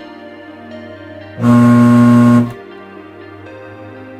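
Microwave oven giving a very loud buzzing hum for about a second, starting about a second and a half in, over a fainter steady hum. The loud hum, in a microwave that does not heat, is the sign of a defective magnetron.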